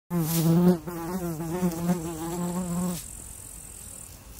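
A loud buzz like a flying insect's wings, holding a steady pitch with a slight waver, that stops abruptly about three seconds in. A faint, thin high whine runs beneath it and carries on for about a second after the buzz stops.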